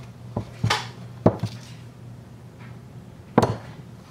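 A few short knocks and clunks as a strut housing is handled and turned over on a wooden workbench, the sharpest about a second in and another near the end.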